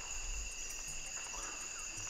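Forest insect chorus: crickets or similar insects chirring steadily at several fixed high pitches.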